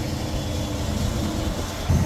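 International log truck's diesel engine idling, heard from inside the cab: a steady low rumble that gets louder just before the end.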